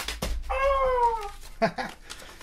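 A knock on the camera with a low handling rumble, as the bagged power cord is tossed at it, then a single drawn-out call of about a second that falls in pitch.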